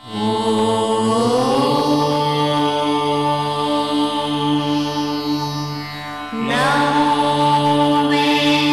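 Devotional music for a channel ident: a long held, chant-like mantra over a steady drone. The pitch slides up about a second in, eases off near six seconds, and a new held note begins soon after.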